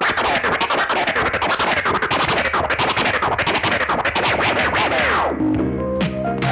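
A DJ scratching a vinyl record on a turntable: rapid cuts and back-and-forth pitch swoops for about five seconds. Near the end they give way to a musical sample with sustained notes.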